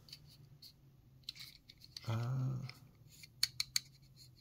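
Fingers handling a small diecast model car with a plastic base, making faint ticks early on and three sharp clicks near the end.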